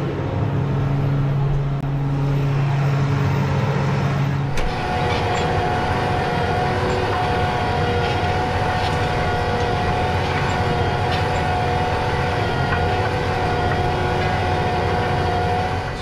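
John Deere 8270R tractor's six-cylinder diesel engine running steadily under load while it pulls a subsoiler, first as a low drone inside the cab. About four and a half seconds in the sound changes suddenly to the same machinery heard from the rear, with a higher steady whine over a noisy rumble.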